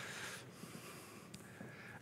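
A man breathing in softly near a microphone during a pause in speech, a faint airy hiss, with one small click a little past halfway.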